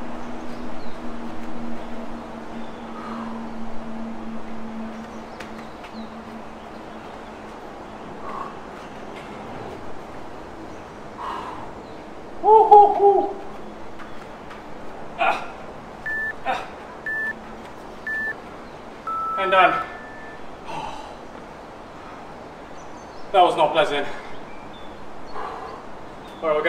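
Workout interval timer counting down: three short high beeps a second apart, then one longer beep marking the end of a 40-second work interval. Between them come short vocal grunts and breaths from a man exercising, the loudest about twelve seconds in.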